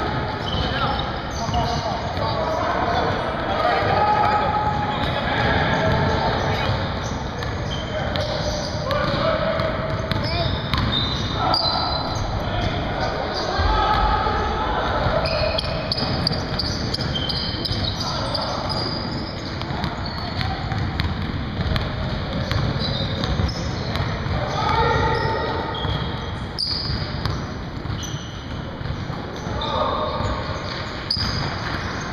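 A basketball game in a gym: a ball bouncing on the hardwood floor, with players' voices calling out across the court.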